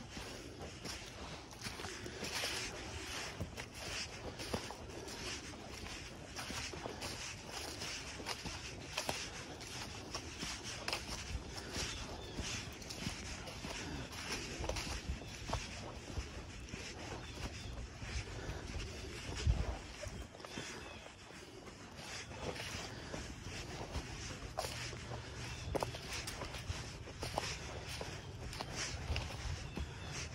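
Footsteps through dry fallen leaves and twigs on a woodland path: a steady walking pace of leaf rustle and crackle.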